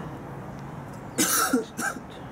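A young man coughing, a loud cough just past a second in and a shorter one just before the end.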